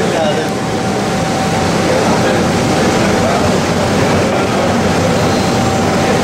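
Many people talking at once in a crowded commercial kitchen, over a steady low rumble of kitchen machinery, with a thin steady tone running through it.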